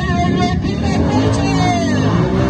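Lifted ATV's engine revving, its pitch climbing through the second half as the machine throttles into a mud pit, over background music.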